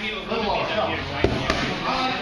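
Two short, sharp slaps about a quarter second apart, a little past the middle, from two grappling partners' hands and bodies meeting as they close into a clinch, over people talking in the room.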